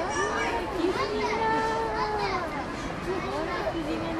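Several voices, children's among them, chattering and calling out at once, too mixed to make out words.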